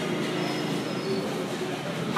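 Steady rumbling noise of a vehicle in motion, with a faint high squeal about half a second to a second in.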